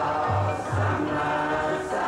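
Buddhist monks chanting together in low male voices, a steady near-monotone recitation of held syllables.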